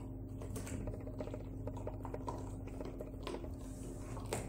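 Miniature Australian Shepherd gnawing a breastbone with its back teeth: a fast, uneven run of small crunching clicks of teeth on bone, with a few sharper cracks.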